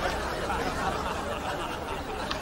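Audience laughter, low and continuous, with a brief sharp click at the very start.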